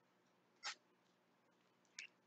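Near silence: room tone, broken by one brief faint rustle-like sound about two-thirds of a second in and a tiny click at the very end.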